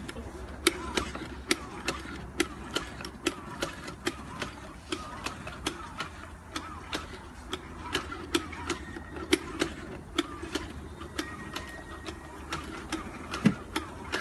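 Commercial automatic donut machine running, its dough-dropping mechanism clicking in a steady rhythm of about two to three clicks a second over a low hum.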